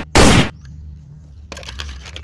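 Two loud gunshot blasts in quick succession near the start, about half a second apart, as a toy shotgun is fired.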